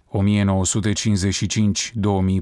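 Speech only: a narrator's voice reading in Romanian.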